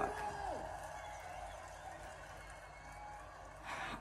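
Faint steady background hiss with a low hum, with no distinct events; the tail of a woman's startled exclamation trails off in the first half second.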